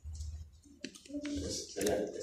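A few sharp clicks, with low voices in the room.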